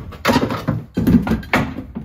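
Irregular knocks, clunks and scrapes as a small outboard motor is hauled out from among stored gear and bumps against things, several separate knocks in two seconds.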